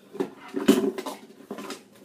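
Kitchen utensils clattering and knocking together as a drawer is rummaged through: a handful of short knocks, the loudest about two-thirds of a second in.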